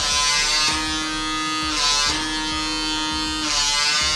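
Handheld PMD personal microdermabrasion device humming steadily as its suction tip is worked over the skin of the jaw. Its tone breaks off briefly twice, about two seconds in and near the end, each time with a short hiss.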